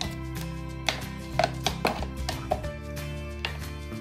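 Background music with held notes, over a spoon knocking and scraping irregularly against a blender jar as thick batter is stirred by hand, the blender switched off.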